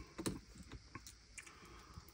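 A few faint, scattered clicks of a small screwdriver working the captive heatsink screws of a laptop's CPU cooler.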